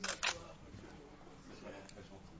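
Camera shutters clicking, two quick clicks close together right at the start.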